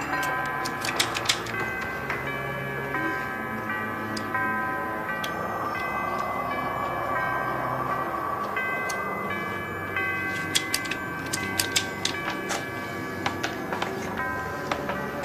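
Soundtrack music built on held, sustained tones, with sharp clock-like ticking notes in the first second or so and again through the last few seconds.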